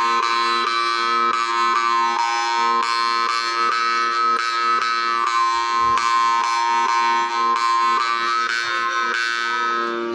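Morchang, a metal jaw harp, played by mouth: a steady buzzing drone with bright overtones shifting above it in a melody, the tongue plucked in an even rhythm of about three strokes a second.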